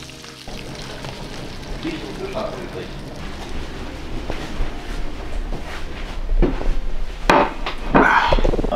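Mackerel frying skin-side down in a pan, a steady sizzle, with a few sharp knocks near the end.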